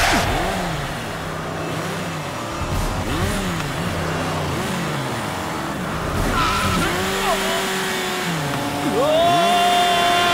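Motorcycle engine revving up and down again and again, then rising into a long, high rev near the end as the bike is launched.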